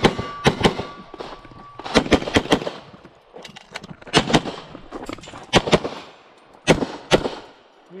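Semi-automatic pistol shots fired in quick pairs and threes, a second or more apart between groups, in a rapid string of fire at IPSC targets.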